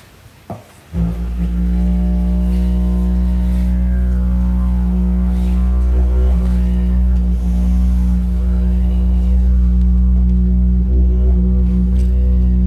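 Didgeridoo drone that starts about a second in and is then held steady and loud, a deep continuous tone with shifting overtones above it.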